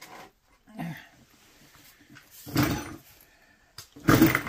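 Faint shuffling and handling noises as a plastic drain container is shifted under an engine on a workbench, with a short voice-like sound about two-thirds of the way in and a sharp click near the end.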